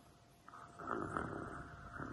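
Pretend snoring by a child acting asleep: after a brief quiet, one long snore begins about half a second in and runs on.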